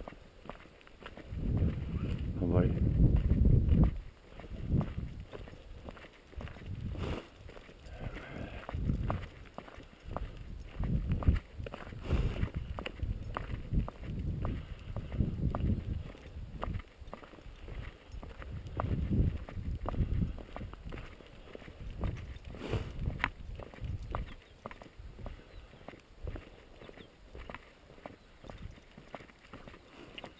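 Footsteps on a gravel dirt road at a walking pace, with irregular crunches and knocks and intermittent low rumbles, the strongest a couple of seconds in.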